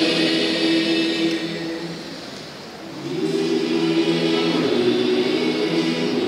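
Mixed church choir singing a Malayalam Christmas carol in long held notes. There is a short lull about two seconds in, and the voices come back in about a second later.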